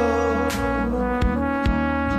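Music: an instrumental passage of a Georgian pop song, held melody notes over a steady bass line, with a few drum hits.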